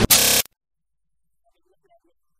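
A loud, buzzy electronic tone closing a channel intro jingle, cut off suddenly about half a second in, followed by near silence.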